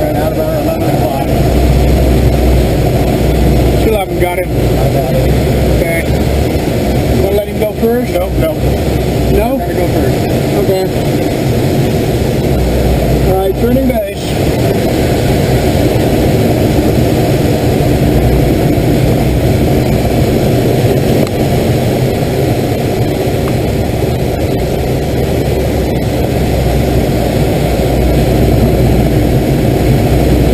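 Steady rush of air over a glider in flight, heard from inside the cockpit, with a few brief wavering tones partway through.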